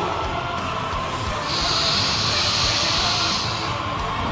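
Background music with a hissing, steam-like sound effect that comes in about a second and a half in and fades out shortly before the end.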